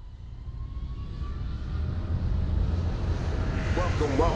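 Intro sound effect: a rumbling whoosh that swells steadily louder, with a deep rumble under a hiss and a faint rising tone, like a jet passing.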